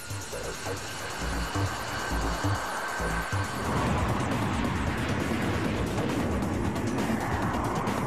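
YF-22 prototype's twin jet engines in afterburner on the takeoff roll: a rushing roar that swells about halfway through and then holds. Background music with a low beat plays under it in the first few seconds.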